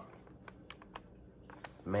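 A few light, sharp clicks and taps from a cardboard ornament box with a clear plastic window being handled and held up.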